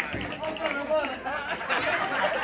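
Indistinct chatter of several people talking at once, overlapping voices with no single clear speaker.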